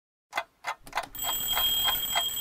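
Cartoon wall clock ticking, nearly four ticks a second, starting out of silence. A faint steady high tone joins about a second in.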